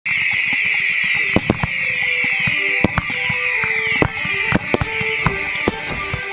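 Intro sound mix of firework bangs scattered through a loud, high hiss that falls in pitch about once a second, with music underneath.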